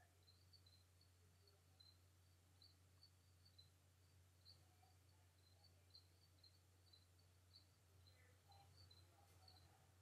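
Near silence: faint room tone with a steady low hum and faint, irregular high ticks.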